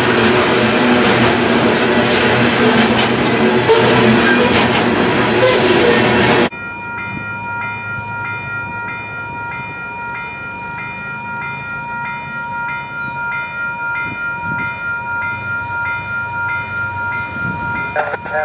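Union Pacific hopper cars rolling past at close range: a loud rumble with wheel clicks over the rail joints. After about six seconds this cuts off suddenly and an approaching Amtrak Dash 8 locomotive blows its multi-note air horn in one long, quieter blast held to the end.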